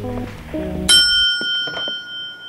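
Light instrumental music ends about a second in, and a single bright bell ding then rings on and slowly fades.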